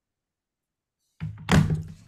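Silence, then a single dull thump about one and a half seconds in, like something knocking against the microphone or desk.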